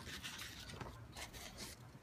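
Faint rustling of paper and faux leather pieces being handled.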